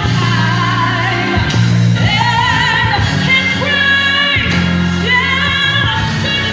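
A woman singing high, held notes with vibrato over an accompaniment of sustained low notes.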